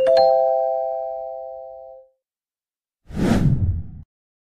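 Subscribe-animation sound effects: a click and a bell-like chime of a few tones that fades over about two seconds, then about three seconds in, a short loud whoosh.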